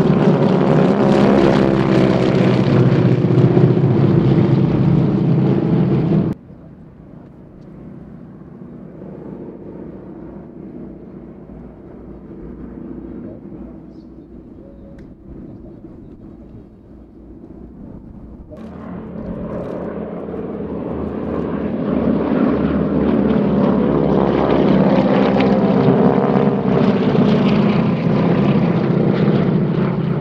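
Propeller aircraft engines of a formation of three planes passing overhead: a loud, steady drone that drops suddenly to a faint distant hum about six seconds in. The drone swells back to full loudness over the last ten seconds.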